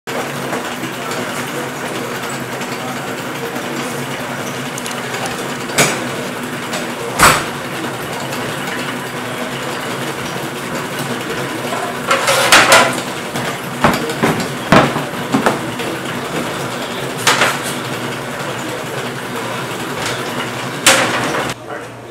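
Steady hum of kitchen machinery, with metal pizza pans clattering and clanking against a steel counter at intervals. The busiest clatter comes about twelve to thirteen seconds in.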